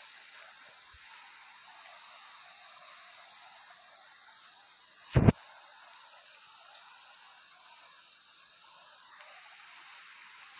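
Steady outdoor background hiss by a forest stream, with one loud sharp thump about five seconds in and a couple of faint clicks after it.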